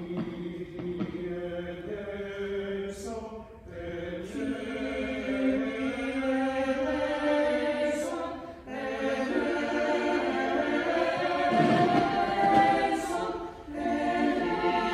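Mixed church choir of men's and women's voices singing in phrases about five seconds long, with brief breaks between phrases.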